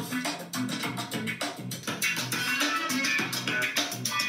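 A music track with guitar and a steady drum beat, played through the built-in speakers of a 15-inch M4 MacBook Air as a speaker test.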